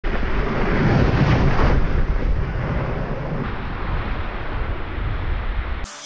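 Snowboard sliding and scraping over packed, groomed snow at speed, with wind rushing over the GoPro microphone; loudest in the first couple of seconds, then easing.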